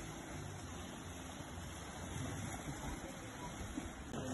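Steady seaside ambience of small waves lapping on a sandy shore, with wind noise on the phone's microphone.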